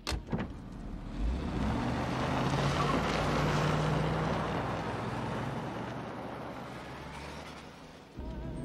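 A 1940s sedan's engine and tyres on the road as the car drives past and away, swelling to its loudest about three to four seconds in and fading toward the end. Two sharp knocks come at the very start.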